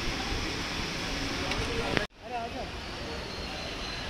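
Steady outdoor noise of voices and traffic, with faint scattered talk. About two seconds in, the sound cuts out abruptly for an instant at an edit, then resumes.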